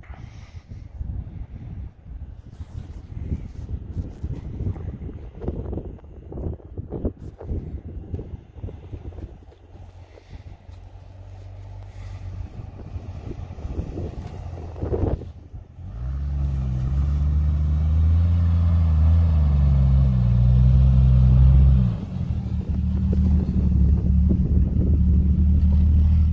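Jeep Cherokee XJ driving through snow: its engine is uneven and distant at first, then gets loud and steady as it pulls up close, with a brief dip in the note near the end.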